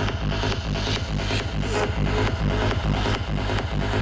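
Loud progressive psytrance played over a festival sound system and recorded from within the crowd: a steady kick drum a little over twice a second, under a rolling bassline.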